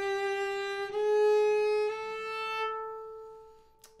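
Solo cello bowed slowly: three sustained notes, each a small step higher than the one before, with the last one fading away near the end. The passage is played as a slow fingering demonstration that includes a first-finger shift.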